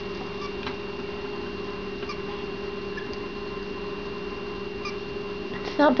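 Steady electrical hum with a faint thin high whine from the laptop's small wired desktop speaker, with a few faint short chirps or ticks now and then.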